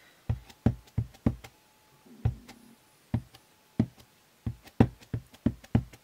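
Classic ink pad in Aventurin dabbed onto a red rubber stamp on a clear acrylic block to ink it. It makes a run of about fifteen sharp, irregular taps, roughly two to three a second.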